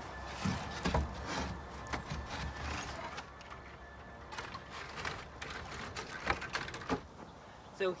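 Old wooden boards handled and set down on a wooden bench, making a scattering of separate knocks and scrapes of wood on wood.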